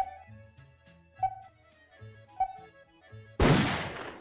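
Three short countdown beeps about 1.2 s apart from a cartoon soundtrack, over soft background music, then a loud noisy burst near the end that fades quickly as the race starts.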